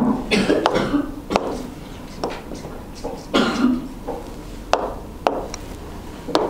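A woman coughing, once at the start and again about three seconds in, with sharp taps of a pen on a touchscreen whiteboard in between.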